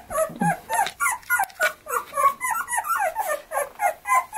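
Young boxer puppies whining: a steady stream of short, high-pitched cries that bend downward in pitch, about four a second.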